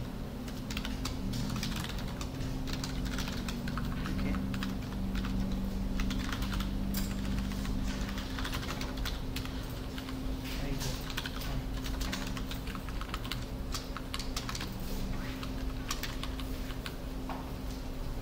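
Typing on a computer keyboard: a quick, irregular run of keystrokes, with a steady low hum underneath.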